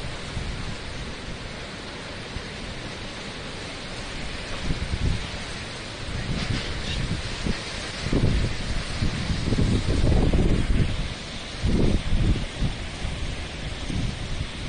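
Storm wind and rain, a steady rushing hiss, with strong low gusts buffeting the microphone from about eight seconds in, loudest around ten seconds and again near twelve.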